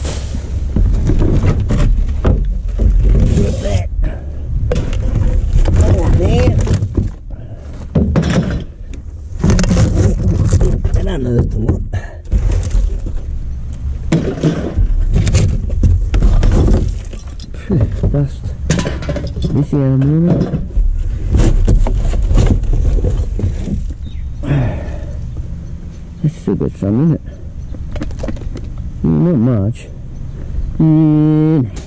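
Rummaging through a plastic wheelie bin: bin bags rustling and glass bottles clinking and knocking as they are handled, many sharp knocks in a row, with indistinct voices now and then.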